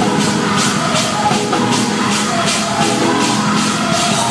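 Gospel choir singing held chords over a live band, with a tambourine-like percussion beat of about three strikes a second.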